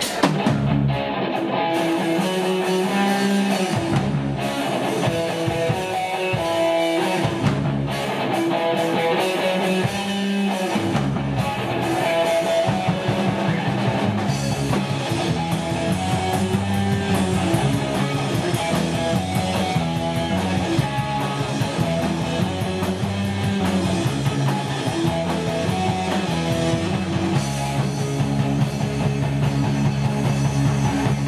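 Live rock band playing an instrumental opening: electric guitar and bass guitar riffing over a drum kit. The heavy low notes stop and start during the first ten seconds or so, then the band plays on continuously.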